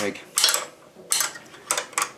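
Ratchet spanner clicking in three short bursts as it tightens the steel bolt of a motorcycle foot-peg bracket by hand.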